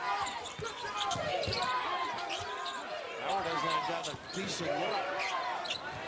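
A basketball being dribbled on a hardwood court, its bounces sounding through a large arena amid voices.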